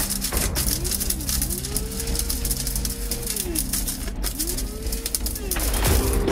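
Electric blade spice grinder run in three bursts, the middle one longest; each time its motor whine rises, holds and falls back, over a dense clatter of dry wood pieces being ground into dust.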